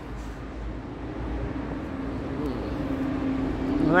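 A motor's steady, even-pitched hum, faint at first and growing gradually louder through the second half, over a low outdoor rumble.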